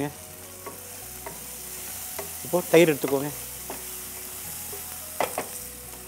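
Sliced onions, tomatoes and green chillies frying in oil in an aluminium pressure cooker, a steady sizzle, while a wooden spatula stirs them with a few light scrapes and taps.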